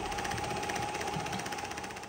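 Theragun percussive massage gun hammering against a glass ketchup bottle: a rapid buzzing rattle over a steady motor whine, shaking the ketchup thin so it sprays out. It fades near the end.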